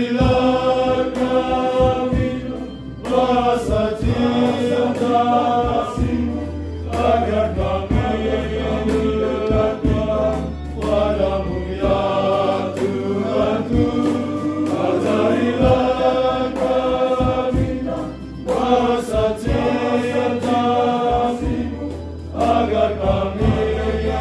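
Male choir singing a hymn in unison, in phrases broken by short breaks every few seconds, over a steady low guitar accompaniment played through an amplifier.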